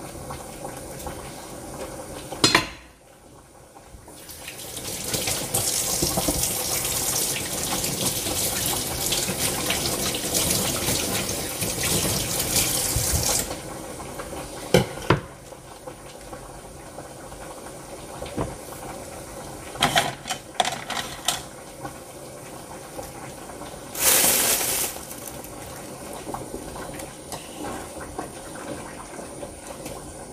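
Kitchen tap running water into a sink for about nine seconds, starting a few seconds in, with scattered knocks and clinks of dishes around it and a short rush of noise later on.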